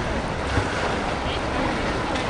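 Steady rushing noise of wind on the microphone, mixed with splashing from water polo players swimming in the pool.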